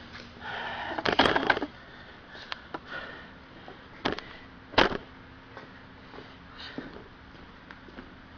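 Video camera being picked up, carried and set down: rustling and a cluster of clattering knocks about a second in, then single sharp knocks at about four and five seconds, the second the loudest. A faint steady hum runs underneath.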